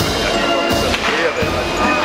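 Band music playing over crowd chatter, with a couple of dull thumps about a second in.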